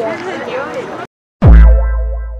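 Group chatter cuts off about a second in. After a moment of silence comes an edited-in sound effect: a very loud deep boom that drops steeply in pitch and rings out, fading over about a second and a half.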